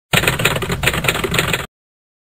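Typewriter sound effect: a rapid run of key clacks that starts abruptly and cuts off after about a second and a half.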